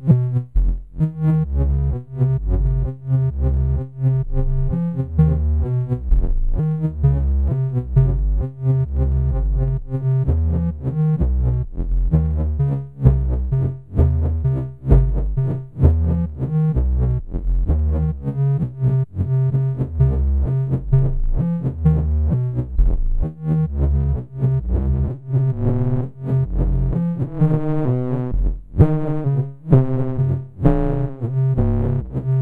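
Eurorack modular synthesizer patch playing a clocked, rhythmic sequence of enveloped notes over a pulsing bass. Three oscillators (Malekko Wiard Oscillator, Anti-Oscillator and Tiptop Z3000) are mixed and cross-modulated through a 4ms VCA Matrix, with a stepped-wave sequence stepping the pitch.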